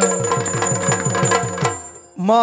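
Yakshagana percussion accompaniment: drums beating a quick, even rhythm of about four to five strokes a second, with a steady high ringing of hand cymbals and a held drone beneath, as the sung line breaks off at the start. It fades away near the end.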